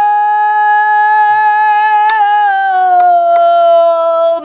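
A woman singing pansori holds one long note, which drops a little in pitch about two seconds in and then holds lower. A few light strokes of the buk barrel drum accompany it.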